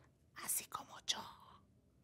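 A person whispering a few short, breathy sounds, stopping about a second and a half in.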